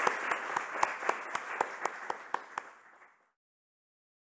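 Audience applauding in a hall, with distinct claps standing out at about four a second. The applause fades and cuts off a little over three seconds in.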